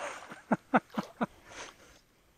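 A man laughing: a run of about five short 'ha' pulses, about four a second, tailing off. The sound cuts off suddenly at the end.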